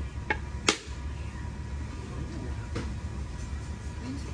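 Sharp knocks of a machete blade striking a coconut shell to crack it open: two knocks in the first second, the second the loudest, and a third near three seconds. A steady low hum runs underneath.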